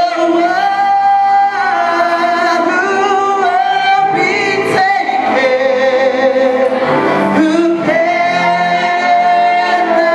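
A young man singing a melody into a handheld microphone over musical accompaniment, holding long notes that slide between pitches.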